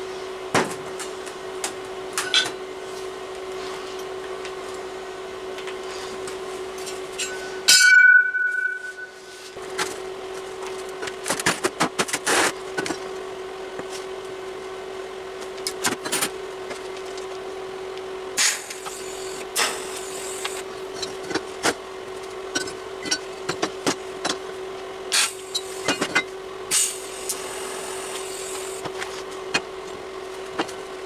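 Steel box-section offcuts knocked and set down on a steel workbench: scattered clanks and taps, with one loud ringing metal clang about eight seconds in, over a steady hum.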